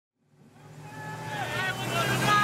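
An off-road vehicle's engine running as it drives up, fading in from silence, with a voice calling out over it.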